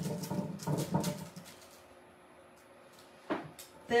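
A plastic stencil being peeled up off wet chalk paste, crackling and clicking for about the first second and a half, then quiet apart from one short click near the end.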